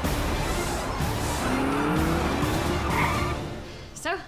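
Race-car sound effects over music: a car engine with a rising rev about a second and a half in, and tyre squeals, fading out near the end.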